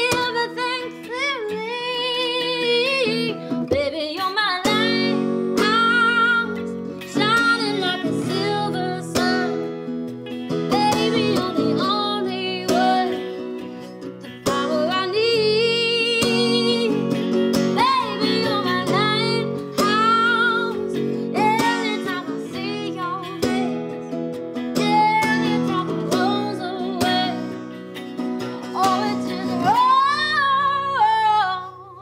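A woman singing a slow, melodic song while accompanying herself on acoustic guitar.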